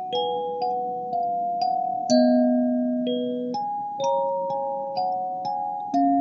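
Lingting K17P 17-key kalimba playing a slow Christmas carol melody. Its plucked metal tines ring on and overlap, a new note about every half second, with lower notes sounding together with the melody every second or two.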